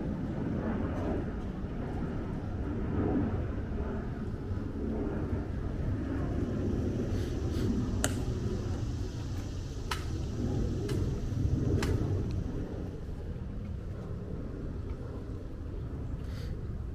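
A steady low outdoor rumble, with a few sharp clicks from the Tomb Guard sentinel's drill movements between about eight and twelve seconds in.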